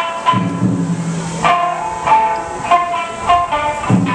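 Traditional Japanese dance music played over a loudspeaker: sharp, quickly decaying plucked shamisen notes, several a second, with a low held line underneath for the first half.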